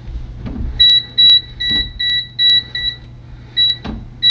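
Kaiweets HT208D clamp meter's non-contact voltage (NCV) alarm beeping rapidly, about four short high beeps a second starting about a second in, then a pause and another beep near the end. The beeping is the meter sensing live wires in a breaker panel.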